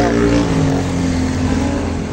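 Road traffic passing close by: a motor vehicle's engine hum that slowly drops in pitch and fades as it goes past.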